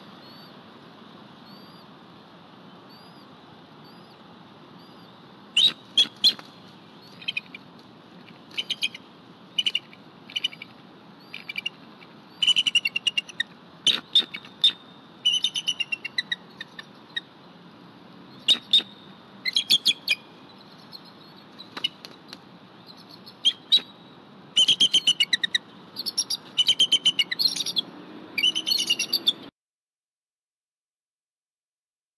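Adult bald eagle calling: bursts of rapid, high chirping notes that start about five seconds in and come more often toward the end, then cut off suddenly.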